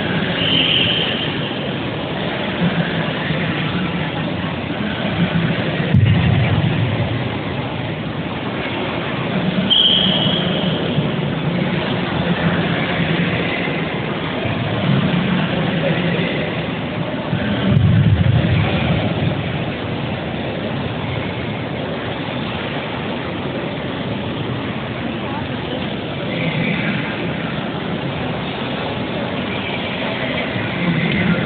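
Steady background noise of a large sports hall with indistinct voices from people around the floor, swelling louder a couple of times.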